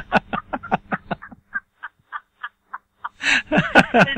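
A person laughing: a quick run of short laugh pulses that slows and fades over the first three seconds, then a louder burst of laughter near the end.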